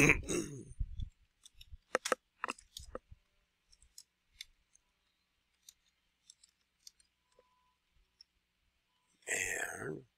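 Computer keyboard keystrokes and mouse clicks, scattered and sparse, a cluster of them about two to three seconds in and single clicks after. A short throat noise comes at the very start and a breath near the end.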